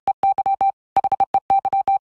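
Breaking-news stinger: rapid runs of short electronic beeps, all on one pitch, with a brief pause about three-quarters of a second in.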